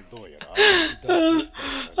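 A man laughing in short, gasping bursts, mixed with dialogue from an anime playing.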